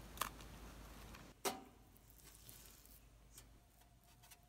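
A bite into a cookie and a few faint, sharp clicks in a quiet room, the loudest about a second and a half in, followed by a faint steady hum.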